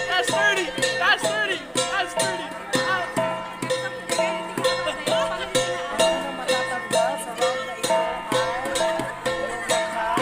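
Traditional Igorot dance music with a drum and ringing pitched notes repeating in a steady beat, about two a second. People call out over it in the first couple of seconds.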